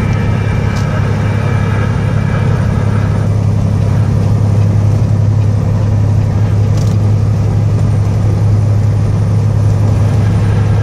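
Car driving at highway speed, heard from inside the cabin: a steady low rumble of engine and road noise.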